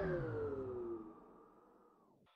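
The tail of a radio music jingle dies away: a falling pitch sweep and its echo fade out over about a second and a half, then silence.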